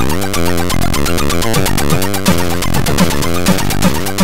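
Four-channel AHX chiptune in the Amiga style, made in Hively Tracker: square- and pulse-wave synth voices play bass and melody parts over a fast, steady beat of ticking percussion.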